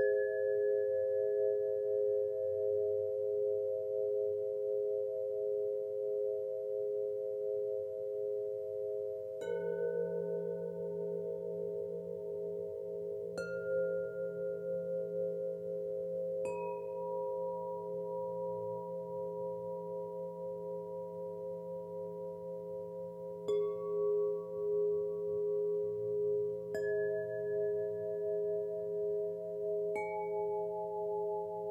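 Meditation music of Solfeggio chimes: about six single chime notes struck several seconds apart, each ringing on over a steady, slowly wavering drone of held tones.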